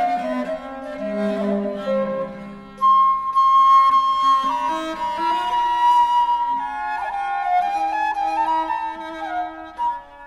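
Baroque trio on period instruments: a traverso (baroque wooden flute) plays the melody over viola da gamba and theorbo continuo in a French chaconne. A long held flute note enters about three seconds in, and a phrase ends with a brief break near the end.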